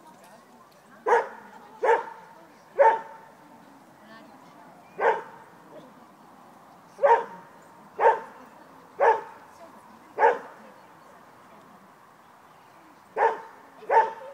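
A dog barking in single sharp barks, about ten of them, at uneven gaps of one to three seconds.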